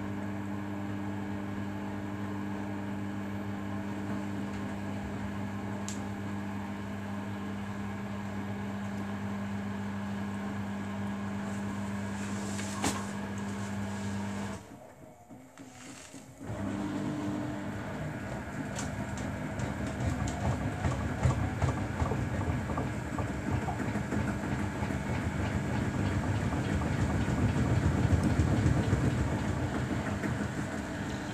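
Samsung Bespoke AI WW11BB704DGW washing machine's drum motor turning the drum slowly during the first intermediate spin, with the load unbalanced; a steady hum cuts out for about two seconds halfway, then the drum starts again and its rumble grows louder.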